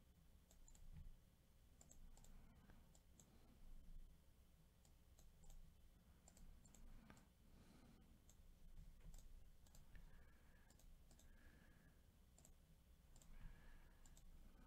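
Near silence with faint, scattered computer mouse clicks.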